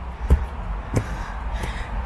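Footsteps on a leaf-strewn dirt trail, three steps about two-thirds of a second apart, over a steady low rumble.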